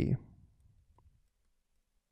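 The last syllable of a man's narrating voice trailing off, then near silence broken by a single faint click about a second in.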